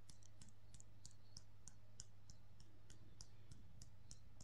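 Faint light clicks, about four a second, from EFT tapping with the wrists knocked together at the wrist point. A steady low hum runs underneath.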